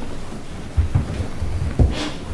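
Low rumbling and two dull thumps, one about a second in and one near the end, as an office chair is pulled out and a man sits down at a table, picked up by the table microphone.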